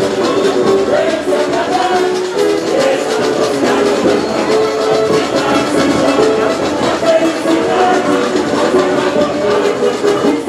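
Samba parade music: a samba-enredo sung by many voices over a samba drum and percussion section, with a steady rhythm.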